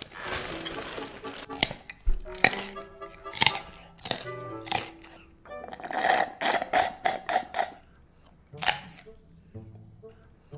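An orangutan's eating and drinking sounds over soft background music: crisp clicks and crunches of cereal in the first half, then about six seconds in a quick run of about a dozen sips through a straw from a glass.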